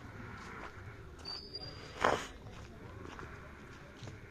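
Footsteps on a path, with a brief high thin tone a little over a second in and one short, louder noise about two seconds in.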